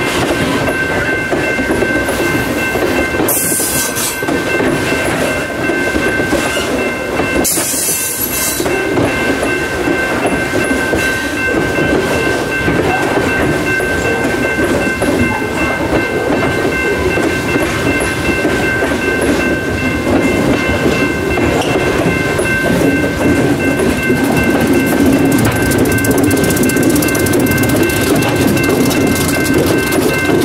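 Loaded freight cars rolling past close by: a steady rumble with clickety-clack of wheels over rail joints, and a steady high-pitched tone running through it. There are two short hissing bursts in the first nine seconds. The low rumble grows louder over the last several seconds as locomotives draw near.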